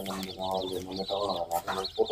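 A brood of young chicks peeping continuously, many short high chirps overlapping, under a person talking quietly.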